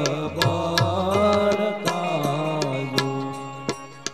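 Devotional singing with instrumental accompaniment and regular percussion strokes, the voice gliding between held notes.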